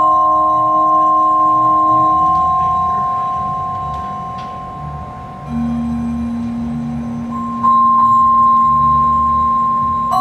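Contemporary chamber music: long, steady held notes form a slowly shifting chord over soft-mallet percussion on a keyboard percussion instrument. A low held note comes in about halfway through, and the music gets louder near eight seconds in.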